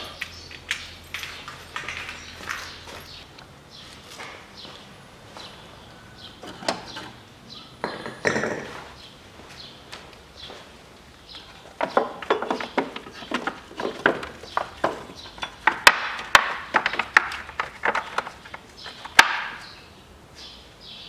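Scattered clicks, knocks and clatter of parts and tools being handled during engine work, sparse at first and coming thick and fast through the last eight seconds.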